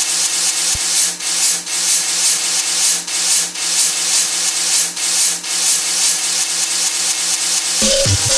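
Intro of an electronic dance track: a loud hissing noise layer that swells and dips in an uneven rhythm over a low steady drone, with no beat yet.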